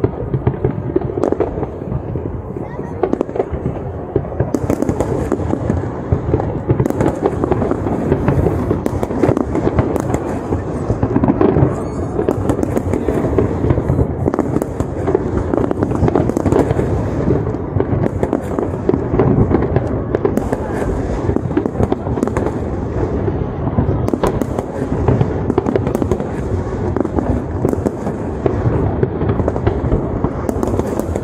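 Large aerial fireworks display: a continuous barrage of overlapping bangs and crackling bursts, many per second.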